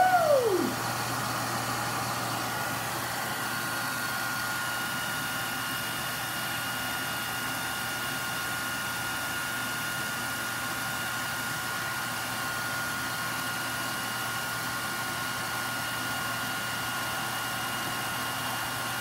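Remington handheld hairdryer running steadily, a constant rush of air with a thin motor whine, as it blows over a cup of freshly poured epoxy resin to bring up cells.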